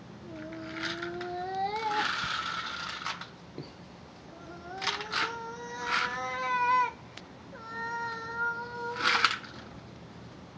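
A toddler's high voice making three long drawn-out calls, each held a second or more and rising slightly in pitch, with a few sharp knocks between them.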